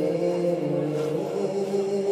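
A young man's voice singing a nasheed through a microphone, holding long notes that bend slowly in pitch.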